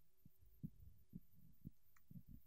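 Near silence: room tone with a few faint low thuds, about two a second.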